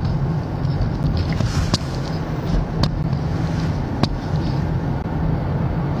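Steady low rumble of a car's engine and tyres heard from inside the cabin while driving, with road hiss over it. Three sharp clicks come about a second apart in the middle.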